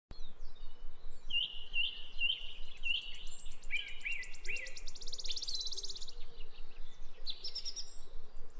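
Birds singing: a run of repeated short chirps, then a fast, high trill from about three and a half to six seconds in, with more chirping near the end.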